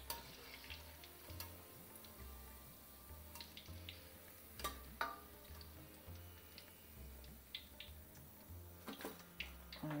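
Faint clinks and taps of a wire spider strainer against a metal karai and a steel bowl, with a couple of louder knocks about halfway through, over a faint sizzle of deep-frying oil.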